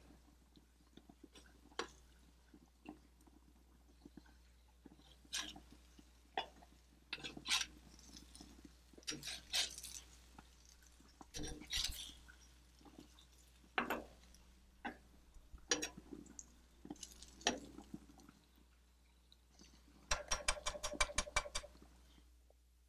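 Slotted metal spatula scraping and clinking against a flat cooking stone as shrimp are stirred, in scattered single strokes, with a quick rattling run of about a dozen taps near the end.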